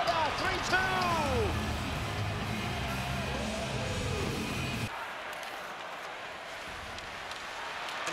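Arena sound after a goal: music over the public-address system with crowd noise, cutting off suddenly about five seconds in and leaving only crowd noise. A commentator's voice is heard briefly at the start.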